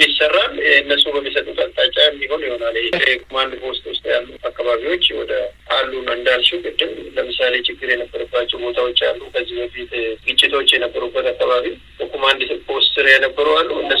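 Speech only: one voice narrating without a break.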